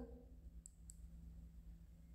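Near silence: room tone, with two faint short clicks a little under a second in.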